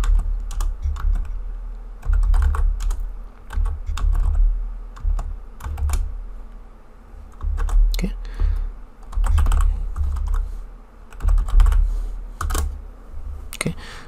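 Typing on a computer keyboard: irregular keystroke clicks with dull thuds, coming in bursts with short pauses between.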